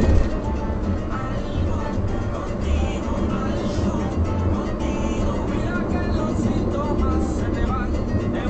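A car radio playing music with a steady beat and a voice over it, heard inside the car's cabin over low driving noise.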